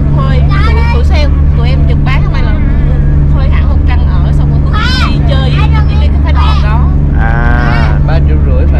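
Steady low engine drone of a water bus, heard inside its passenger cabin, with conversation going on over it.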